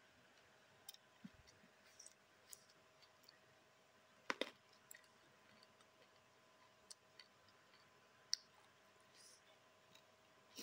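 Near silence broken by scattered faint clicks of eating: mouth and lip smacks while chewing rice, with a louder pair of clicks about four seconds in.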